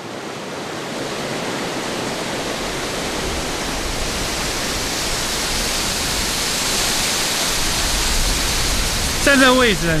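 Rumbling rush of water from a waterfall and the rocky creek below it: a steady, even roar that fades in at the start and grows slightly louder. A man starts talking near the end.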